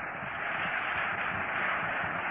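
Steady, dull hiss of an old lecture recording in a pause between sentences, with no other distinct sound.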